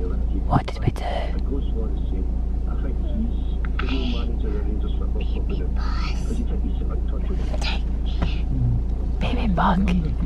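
Steady low rumble of a car idling, heard inside the cabin, with a toddler's quiet voice now and then.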